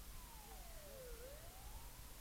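Faint wailing siren, its pitch sliding slowly down for about a second and then back up again.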